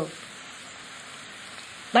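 Steady background hiss of the lecture recording in a pause between spoken phrases, an even noise with no distinct events.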